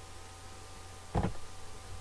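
Steady faint electrical hum, with one short computer-keyboard keystroke a little past halfway.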